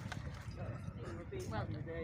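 Indistinct voices of people talking, with a couple of faint short knocks.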